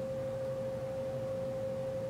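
A steady single-pitch whine held without change, with a fainter low hum beneath it.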